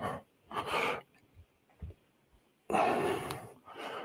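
Breath noise on a close headset microphone: a short exhale about half a second in, then a longer, louder one near three seconds, with a couple of faint clicks between.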